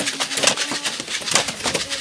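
Several short-handled iron hand hoes chopping into dry earth: rapid, irregular strikes, several a second, overlapping from a group working together. Brief low tonal notes sound between the strikes.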